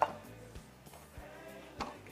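Soft background music under the kitchen room sound, with a sharp click at the very start as a knife is set down on a wooden cutting board and a light knock near the end as the food processor is handled.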